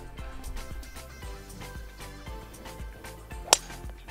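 A golf driver striking a teed ball: one sharp crack about three and a half seconds in, the loudest sound here. Background music plays throughout.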